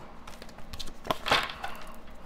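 Oracle cards being shuffled by hand: irregular soft clicks and slaps of card edges, with a louder rustle of the deck about a second in.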